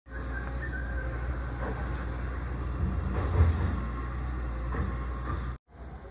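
Aircraft engine rumble overhead: a steady low roar that swells to its loudest about halfway through, then cuts off suddenly near the end.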